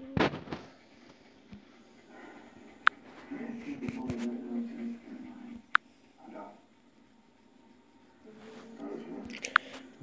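A few sharp clicks spread through the quiet, with faint low voices murmuring in the room between them.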